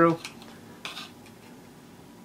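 Light clinks and a brief scrape of small metal parts being handled: the stepper-motor mount and frame of a camera panning rig fitted together by hand. The scrape comes about a second in.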